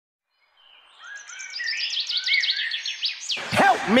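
Bird chirping: a quick run of short, high, falling chirps, several a second, fading in over the first second. Near the end a high-pitched voice starts calling out.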